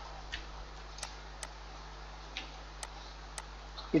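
Computer mouse clicks, about six of them, short and irregularly spaced, over a faint steady low hum.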